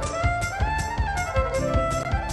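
Live acoustic band playing a fiddle-led instrumental intro: a violin melody with sliding notes over a steady driving beat from cajon and bass drum.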